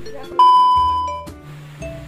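A steady, loud, high test-tone beep of the kind played with TV colour bars starts suddenly about half a second in and holds for under a second, over quieter background music.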